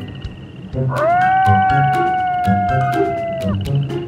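Children's background music with a steady beat; about a second in, a long howl rises, holds nearly level for over two seconds and drops away, a wolf howl sound effect.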